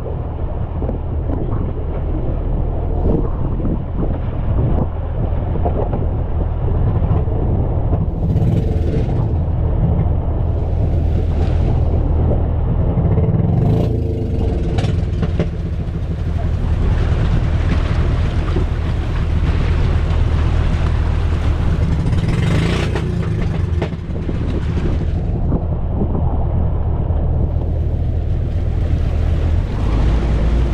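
Engine of an outrigger fishing boat running steadily while underway, a low drone under the rush of wind and water. Wind buffets the microphone in gusts, strongest in the middle and again a few seconds before the end.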